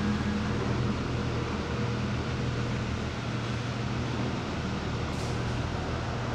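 A steady, low machine hum with an even background noise, with a brief faint hiss about five seconds in.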